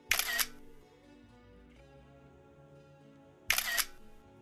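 Camera shutter sound, twice: one right at the start and one about three and a half seconds later, each a short double click, over quiet background music.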